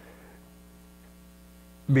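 Steady electrical mains hum in an otherwise quiet room.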